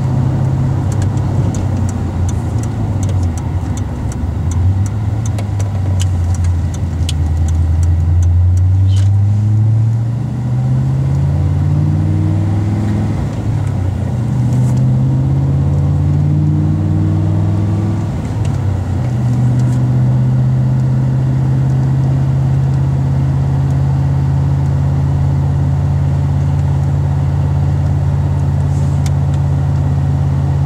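Holden VZ Commodore SS V8 engine heard from inside the cabin, running at steady cruising revs, then accelerating: its pitch climbs and drops back several times as it shifts up through the gears between about eight and nineteen seconds in, before it settles into a steady cruise again.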